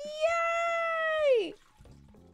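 A woman's long, drawn-out cheer of "yay", held on one high note for over a second, then sliding down in pitch and stopping about a second and a half in.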